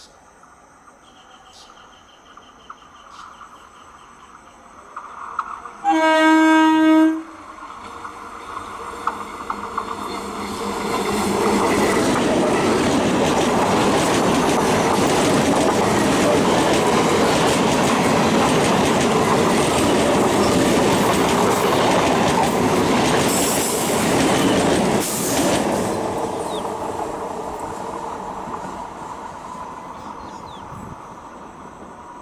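Electric multiple unit (EMU) local train sounding its horn once for about a second, then passing at speed: the rush of its wheels on the rails builds up, holds loud and steady for over ten seconds, and fades as the train draws away.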